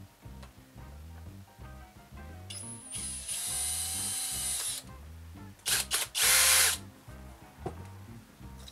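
Cordless drill running for about two seconds, then a few short trigger bursts and a louder last burst that winds down.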